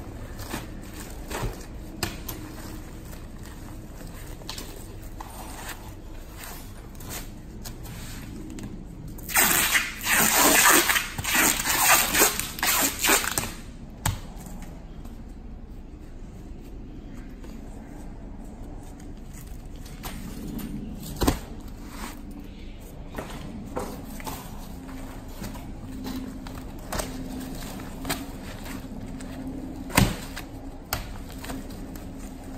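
Thin gurjan face-veneer sheets rustling and ticking as they are handled and rolled up, with a loud, harsh ripping stretch of about four seconds starting about nine seconds in, as adhesive tape is pulled off its roll to bind the rolled veneer.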